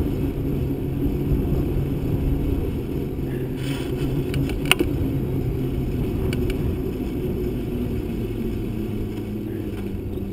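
Bicycle tyres humming on asphalt, with wind rumble on the microphone; the hum sinks lower in pitch in the second half as the bike slows. A single sharp click about halfway through.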